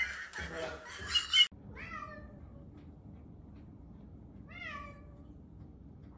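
A cat meows twice, the first call about two seconds in and the second near five seconds, each call falling in pitch.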